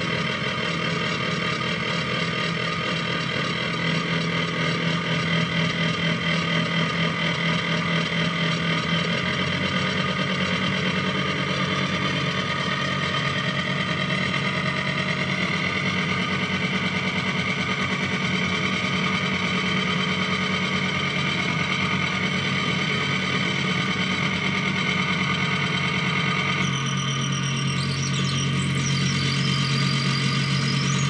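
Electronic noise improvisation played live on a tabletop rig of small circuit boards and effects boxes patched together with cables. It is a dense, continuous drone of many sustained tones over a low hum. Near the end the low hum drops to a lower pitch and high, warbling squeals come in.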